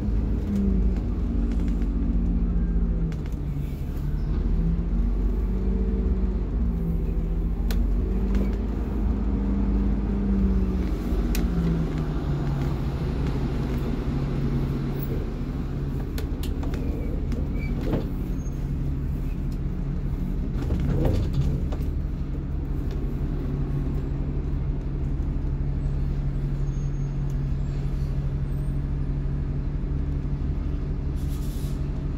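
2008 Blue Bird school bus engine heard from the driver's seat, rising and falling in pitch as the bus manoeuvres slowly for the first dozen seconds, then settling into a steady low note. A few faint clicks and knocks sound over it.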